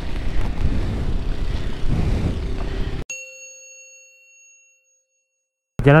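Motorcycle riding noise for about three seconds, cut off suddenly by a single bell-like ding that rings and fades out over about two seconds against dead silence, an edited-in chime.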